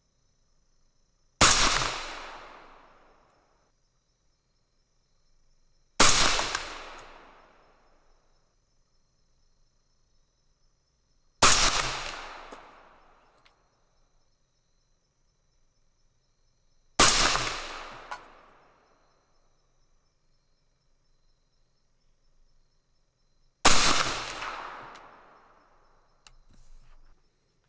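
Five single rifle shots from a 6mm ARC AR-style rifle, spaced about five to six seconds apart. Each is a sharp crack followed by a rolling echo that dies away over about two seconds. The rounds are a mild handload: 90-grain Sierra Tipped GameKing bullets over 25.5 grains of IMR 8208 XBR.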